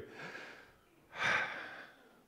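A congregation taking a deep breath together: a faint breath in, then a louder breath out, like a sigh, starting about a second in.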